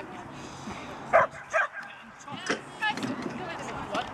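A dog barking: three short, sharp barks, the first two about a second in and close together and the third near the middle. People's voices murmur in the background.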